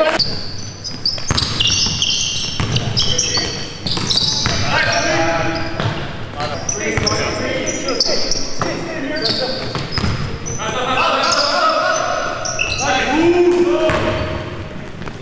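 Live basketball game in a gymnasium: the ball bouncing on the hardwood court, short high sneaker squeaks, and players calling out, all echoing in the hall.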